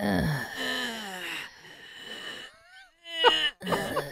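A person doing an impression of someone's habitual guttural noises: drawn-out throaty groans that slide down in pitch. Short bursts that sound like laughter come in near the end.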